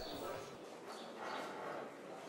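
Faint background sound of a livestock exhibition hall, with distant animal calls and a low murmur.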